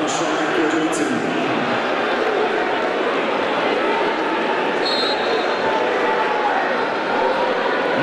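Football stadium crowd noise: many fans' voices blending into a steady din, with some chanting. A short, high whistle sounds about five seconds in.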